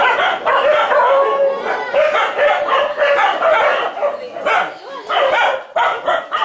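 A large pack of dogs barking and yipping over one another, many at once, excited at feeding time.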